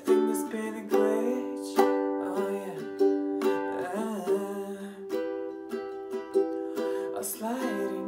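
Acoustic ukulele strumming chords, with a sharp accented strum about once a second that rings and fades before the next.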